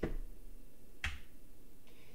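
Two single clicks of computer keyboard keys, one right at the start and one about a second in, paging through a manual page in a terminal.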